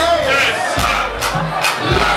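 Club crowd shouting and cheering over a dancehall beat, its bass thumping about once a second.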